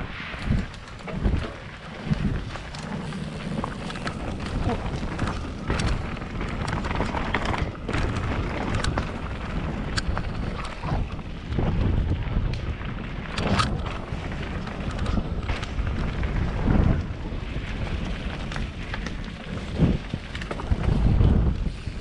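Mountain bike riding down a rough dirt forest trail, heard from a helmet-mounted camera: wind buffets the microphone in a continuous low rumble, while the tyres on dirt and the bike rattling over bumps give many sharp knocks throughout.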